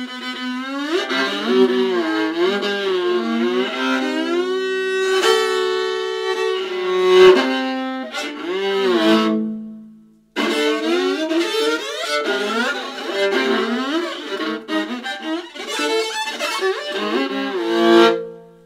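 Solo viola played with the bow: sliding pitches and held double stops in the first half, a sudden break about ten seconds in, then fast, agitated bowing in short strokes.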